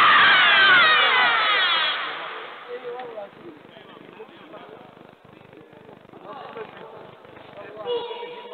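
Several voices shouting at once as two karate fighters clash in a kumite exchange. The shouts are loud for about two seconds and then die away into the murmur of a sports hall, with a short shout near the end.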